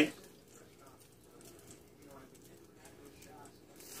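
Faint, light sizzling and crackling of a sandwich cooking in a closed electric contact grill.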